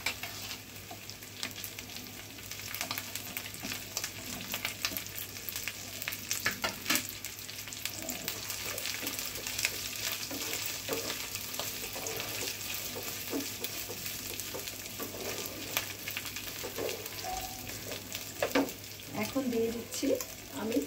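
Shredded dried fish sizzling in hot oil in a frying pan, stirred with a wooden spatula whose strokes tap and scrape against the pan many times over a steady sizzle.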